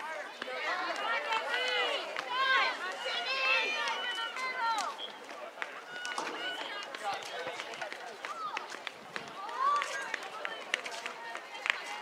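Voices calling and shouting across a soccer field during play, the calls fastest in the first few seconds and again near the end, with scattered sharp knocks.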